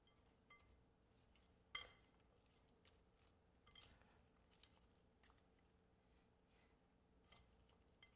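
Mostly near silence, with a few faint clinks and scrapes of a metal spoon against a glass mixing bowl as a mayonnaise-dressed chicken salad is stirred; the clearest clink comes just before two seconds in.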